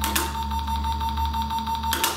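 Electronic handheld word-guessing game's timer beeping in a steady repeating pattern.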